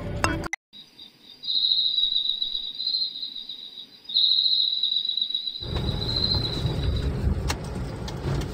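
Crickets chirping in a steady, high trill, broken once briefly near the middle. Past the middle, the low rumble of a car driving on a road comes in beneath it, and the chirping stops shortly after.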